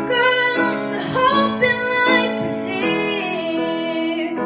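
A girl singing into a microphone while accompanying herself on a grand piano.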